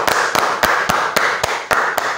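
Hands clapping in a steady rhythm, about four claps a second, over a steady rushing noise.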